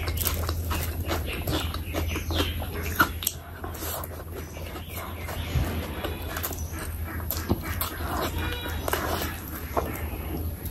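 Close-miked wet chewing and lip-smacking of mouthfuls of oily curry and rice, with sticky squelches of fingers mixing the curry into rice, in many short clicks and crackles over a steady low hum.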